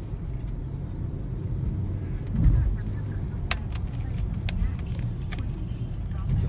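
Car cabin noise while driving: a steady low rumble of road and engine, with a brief louder swell about two and a half seconds in and a few sharp clicks.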